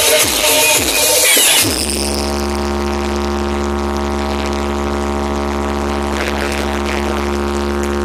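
Stacked speakers of a DJ sound truck playing music at high volume. Under two seconds in, the beat stops and gives way to one long, steady held drone with heavy bass.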